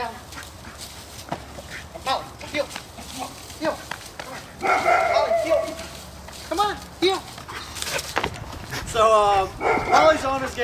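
Belgian Malinois puppy barking in short, separate barks, with one longer drawn-out call about five seconds in.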